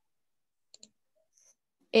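Near silence broken by two quick, faint clicks a little under a second in. Speech begins right at the end.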